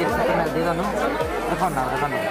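Speech: a man talking close up, with chatter from other people around him.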